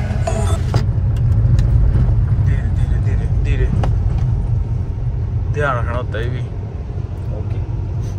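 Cabin rumble of a Chevrolet Sail driving over a rough, broken road: steady low road and tyre noise.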